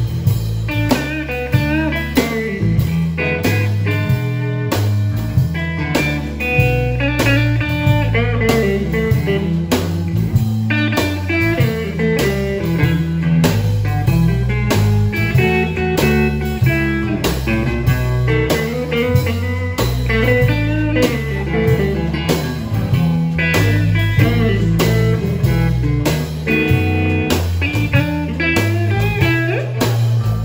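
Live blues band playing an instrumental passage: a Stratocaster electric guitar through a Fender Blues Junior amp plays a lead line over electric bass and drums.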